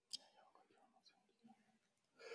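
Near silence on a video-call feed, with one short click just after the start and a very faint, muffled voice-like murmur: the panelist's audio is not coming through.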